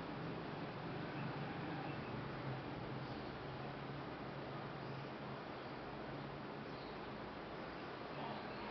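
Steady low hum and hiss of a desktop PC's fans running while Windows restarts, with the hum easing a little in the second half.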